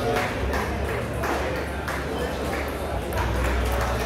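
Table tennis ball clicking against table and bat, a handful of sharp taps under a second apart, over the chatter of a busy playing hall.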